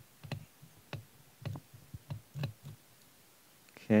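Light, separate clicks, about one every half second, from a hand-turned precision screwdriver working the tiny Torx screws in a phone's frame.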